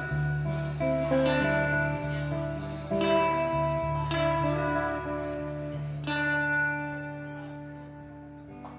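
Live band music led by an electric guitar: single plucked notes ring out about once a second over a steady low tone, and the sound dies away near the end as the song closes.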